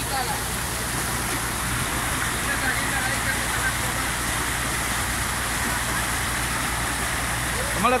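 Muddy floodwater rushing steadily down a freshly dug earthen drainage channel, a continuous, even rush of water.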